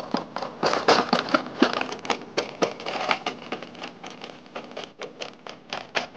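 Point-foot biped robot's feet stepping over stones and dry fallen leaves: irregular crackling and tapping, dense at first and thinning out in the last couple of seconds.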